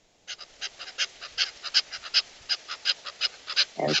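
Small birds giving a fast run of short, sharp alarm calls, about six a second, scolding a Pallas's cat: they're really telling him off.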